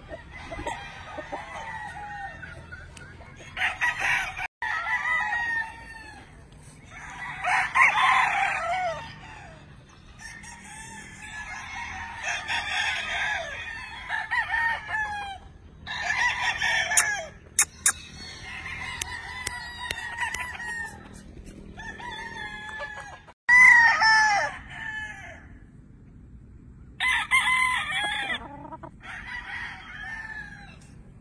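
Many gamecocks crowing one after another, with some crows overlapping, a dozen or so long calls in quick succession. The sound drops out sharply twice.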